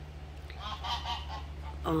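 Goose honking: a quick run of several short, faint honks from about half a second in, over a steady low hum.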